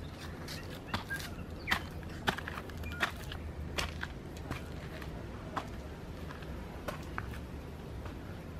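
Footsteps climbing a steep dirt track with timber-edged steps, short irregular scuffs every half second to a second, over a low steady rumble.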